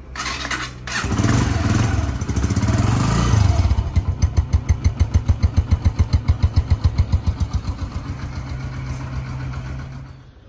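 Yamaha XTZ 125's single-cylinder four-stroke engine, on its stock exhaust, started: a short burst of cranking, the engine catches about a second in and runs fast for a few seconds, then settles into an idle with a strong even pulse of about six beats a second that smooths out and grows quieter near the end.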